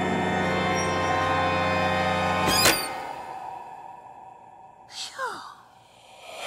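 Spooky cartoon background music with sustained tones that stops on a sharp hit a little past halfway, then fades away. Near the end comes a short sound that slides down in pitch.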